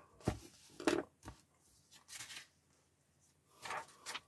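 Pages of a paper magazine being turned and handled: a few short, soft papery rustles.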